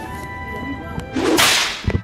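A loud swish sound effect marks a scene transition: it swells and fades over about half a second in the second half and ends in a low thump. Quiet background music with sustained tones plays underneath before it.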